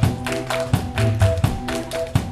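Live amplified band playing: the drum kit keeps a steady beat of about four light hits a second under held keyboard notes and low notes.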